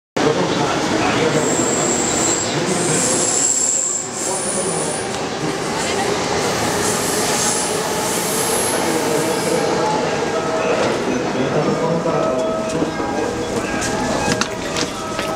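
Crowded Tokyo subway train and platform: a steady din of the train and crowd, with passengers' voices and movement. Several short high-pitched squeals come within the first nine seconds or so.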